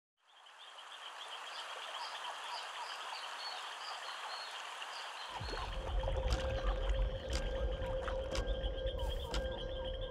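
Rainforest ambience of frogs and insects fading in, with a steady high trill and repeated chirps over a hiss. About five seconds in, a deep low rumble and a held mid tone join, with scattered sharp clicks, as a cinematic soundtrack builds.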